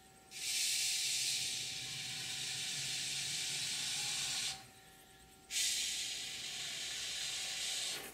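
Aerosol can of Great Stuff polyurethane expanding foam dispensing through its straw nozzle: a steady hiss of about four seconds, a pause of about a second, then a second hiss.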